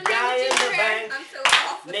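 Hand claps keeping a slow beat about once a second, with voices singing and chattering between them.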